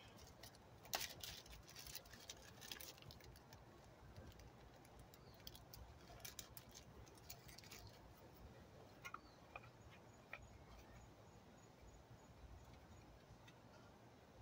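Faint handling sounds: light scattered clicks and rustles, mostly in the first half, as white powder is added to a tin can of alcohol to make fire gel.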